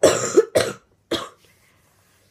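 A girl coughing into her fist: three coughs in quick succession, the first two close together and the third a little later.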